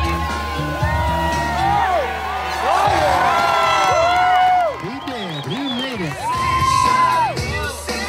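Crowd of spectators cheering, shouting and whooping, swelling about three seconds in and with a long drawn-out whoop near the end, over music with a steady bass line.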